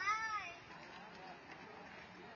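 A short, high-pitched cry that rises and then falls in pitch, lasting about half a second at the start.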